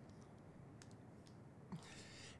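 Near silence: quiet room tone with a few faint, sharp clicks, and a soft breath near the end.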